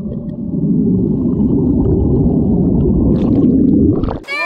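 Muffled underwater rush of bubbles churning around a swimmer who has just plunged into a pool with a chunk of dry ice, heard through a submerged camera: a dense, steady low rumble with the high end cut away by the water.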